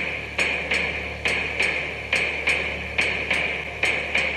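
A hammer striking metal in a steady rhythm, about three ringing blows a second.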